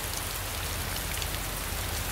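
Rain falling steadily, an even hiss of drops on wet pavement and on the vehicle, with a low steady rumble underneath.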